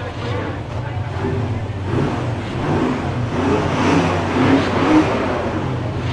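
A car engine running, growing louder through the middle and peaking near the end, with people's voices alongside.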